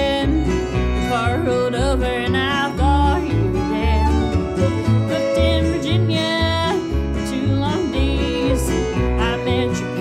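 Instrumental break of a bluegrass-style country song: a fiddle plays the lead melody with sliding, wavering notes over strummed acoustic guitar and a bass line stepping about twice a second.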